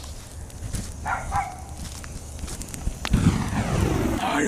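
Bonfire of dead leaves crackling with a few sharp pops, along with low thumps a little after three seconds and a faint voice about a second in.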